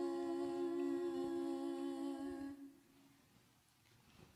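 Singers humming a long sustained chord, held steady, then fading away about two and a half seconds in, leaving near silence.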